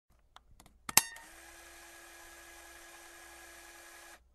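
A few faint clicks, then one sharp loud click about a second in, followed by a faint steady hum with a low tone that cuts off abruptly just after the end.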